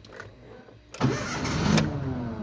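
Ford Fiesta engine cranked by the starter from about a second in, catching but not settling into running, because the fuel pump feed is cut through the disconnected immobilizer wiring.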